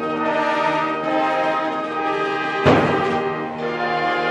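Concert wind band holding sustained chords, with one sudden loud percussion stroke a little under three seconds in.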